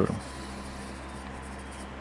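A pen writing by hand on a sheet of paper, faint, over a low steady hum.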